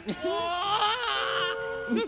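A cartoon character's voice crying out in pain, "Aray ko!" (ouch), trailing into a wavering wail that stops about a second and a half in, over background music whose held notes carry on to the end.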